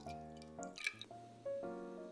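The last of a stream of milk poured from a glass jug into a saucepan, tailing off into a few drips and splashes about half a second to a second in, over background music with held notes.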